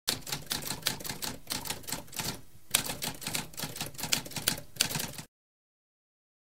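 Mechanical typewriter keys typing rapidly in a quick run of clacks, with a brief lull about halfway followed by one sharper clack. The typing then resumes and stops abruptly a little after five seconds in.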